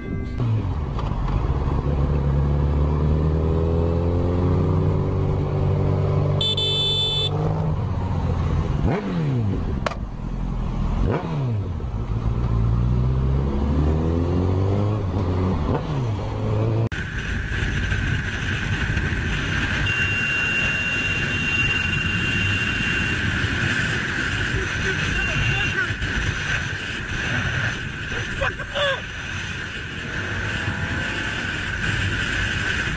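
Motorcycle engine revving and pulling through the gears, with quick drops in revs about a third of the way in. After a sudden change about halfway through, a steady high whine and wind rush at road speed.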